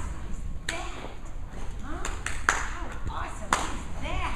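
Indistinct voices in a large room, with several sharp taps or clicks; the loudest comes about two and a half seconds in, and another near the end.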